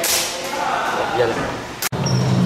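Indistinct voices over a steady hiss, ending in a sharp click and a brief dropout of the sound near the end.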